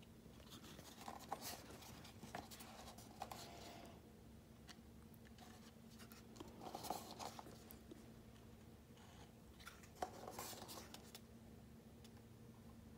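Near silence with faint handling noises: small scrapes and taps as a thin metal tailpipe and a plastic glue bottle are turned in the hands, over a low steady hum.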